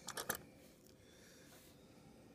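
A few quick, light clicks of a sewing machine's metal bobbin case being handled in the fingers and set down on a wooden table, all within the first moment.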